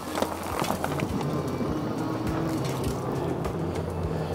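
Bicycle rolling along a wooden boardwalk: a steady low rumble with scattered clicks and knocks from the tyres and frame.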